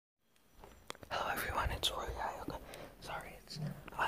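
A person whispering close to a phone microphone, with a couple of sharp clicks near the start.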